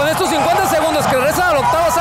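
A man talking continuously over low arena crowd noise.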